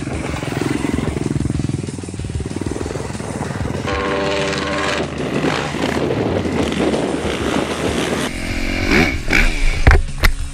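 Dirt bike engine revving hard under load in soft sand, its pitch climbing and falling repeatedly. A sharp knock comes right at the end.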